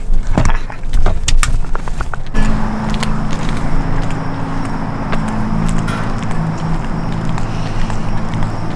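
Clicks and knocks of getting settled into a car for the first two seconds or so, then a steady engine and road hum heard from inside the car as it drives.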